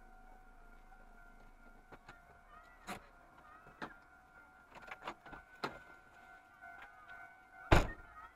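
Scattered light clicks and knocks inside a car, ending near the end in a loud thump of a car door shutting. Under them is a faint steady tone from the level-crossing warning signal.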